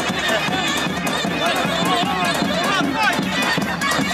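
Loud live dance music: a reedy, ornamented melody line that bends up and down in pitch, over percussion, playing without a break for a line dance.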